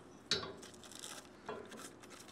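Two light metallic clinks about a second apart, each with a short ring, from the metal parts of a disassembled aircraft engine being handled.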